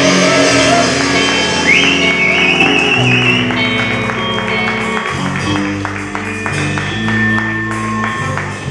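Live metal band playing amplified: electric guitars and bass over drums, with a held, wavering high note from about two seconds in.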